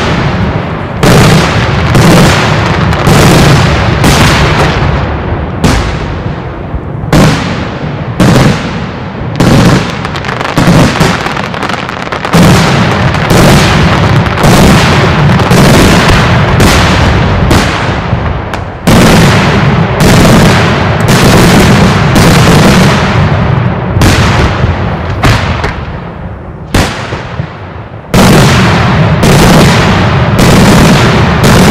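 Daytime fireworks display: a dense barrage of aerial shells bursting overhead, very loud sharp bangs coming about one or two a second over a continuous rumble of explosions. The barrage thins briefly a few seconds before the end, then comes back at full strength.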